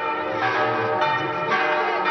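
Church tower bells pealing: several bells sound in turn, with a new stroke about every half second over their overlapping ringing.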